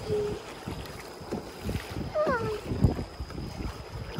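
Rush of a fast-flowing river heard from a kayak in choppy current, with wind buffeting the microphone in irregular low gusts.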